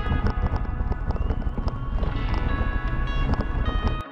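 Mountain bike rattling and jolting over a dirt fire road, with rapid knocks and a heavy low rumble of wind and vibration on the bike-mounted camera, under background music.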